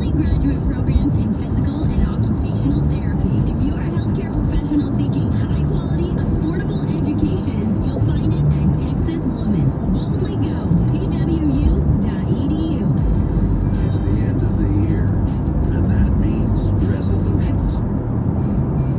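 Car radio playing a song with vocals, over steady road and engine noise inside the car's cabin.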